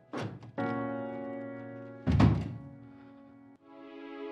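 Dramatic background-music sting: a quick whoosh, then a held chord, then a deep boom hit about two seconds in that rings out. A softer, sad music cue takes over near the end.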